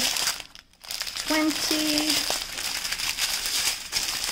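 Small clear plastic packets of diamond painting drills crinkling as they are picked up and shuffled by hand, with a short pause about half a second in.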